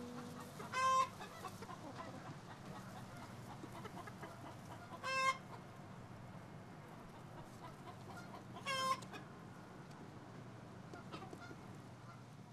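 Chickens clucking: three short calls a few seconds apart, about a second in, about five seconds in and near nine seconds, over a faint steady background.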